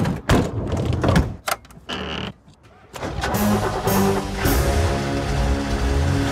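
Camper van doors shutting: a few sharp thunks in the first two seconds. Music comes in about three seconds in.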